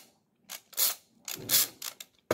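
Small plastic toy packaging rustling and crackling in about four short bursts as it is handled and unwrapped by hand.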